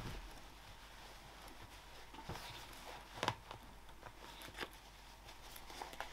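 Soft handling of a small lined fabric bag as it is turned right side out through its open zip: faint fabric rustling with a few soft clicks, the loudest about three seconds in.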